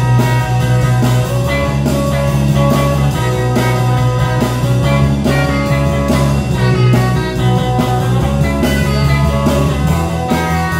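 A small live band jamming in a blues-rock style: guitar, bass guitar and drum kit keep a steady groove under a lead line of long held notes.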